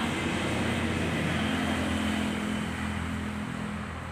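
A motor hums steadily over outdoor background noise, with a higher hum joining about one and a half seconds in.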